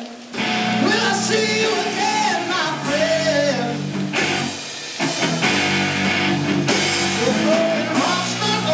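Live rock band playing: electric guitar, bass guitar and drum kit, with a voice singing over them. The band breaks off for a moment at the very start and comes straight back in.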